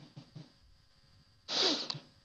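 A short, sharp, hissy breath from a man just before he starts to speak, about one and a half seconds in, picked up close on a studio microphone. A few faint soft mouth clicks come before it.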